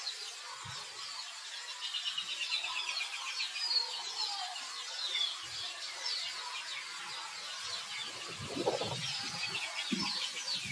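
High-pitched animal calls: many short chirping notes rising and falling, with a quick repeated run of them a couple of seconds in. A low rumble comes about eight and a half seconds in.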